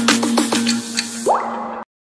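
Logo intro music: a held tone under a string of quick falling water-drop blips, then a rising sweep, cutting off suddenly near the end.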